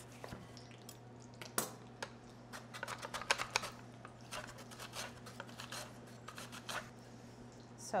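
Celery root being sliced on a Japanese mandoline with julienne teeth: a run of short, quick slicing strokes, over a faint steady hum.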